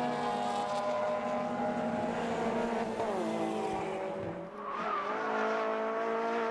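Racing car engines running at high revs on the circuit. The note drops in pitch about three seconds in, then after a brief lull a different engine note takes over and rises slightly.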